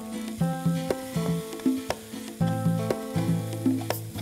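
Onion-tomato masala sizzling in a non-stick kadai as a spatula stirs it, with a few sharp clicks of the spatula against the pan. Background instrumental music plays throughout.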